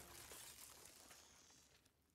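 Near silence: a faint, fading film soundtrack that cuts out completely near the end.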